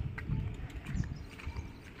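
Footsteps of a person walking on brick paving, soft low thuds at about three a second.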